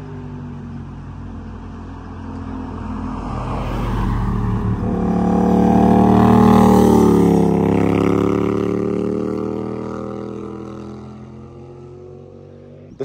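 Motorcycle riding past, its engine growing louder to a peak just past the middle and dropping in pitch as it moves away, with a car following it past.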